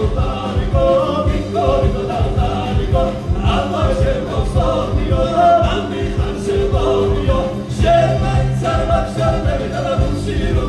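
Georgian ethnic folk band performing live: several voices singing together over a steady, fast beat.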